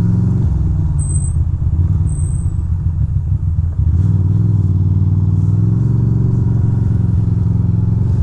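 A 2006 Ducati Monster 620's air-cooled L-twin engine running at low road speed, easing off briefly a little before halfway and then pulling again.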